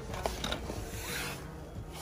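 A cardboard product box handled and taken off a metal store shelf: a few small clicks and knocks, then a soft rubbing of cardboard.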